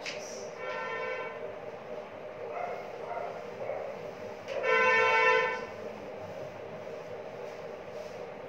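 Two horn blasts: a short one about a second in, then a longer, louder one of about a second near the middle, over a steady drone. Under them is the soft rubbing of a duster wiping a chalkboard.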